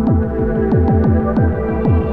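Ambient electronic music: a fast pulse of synthesizer notes, each dropping in pitch, about four a second, over held synth chords, with faint ticks above.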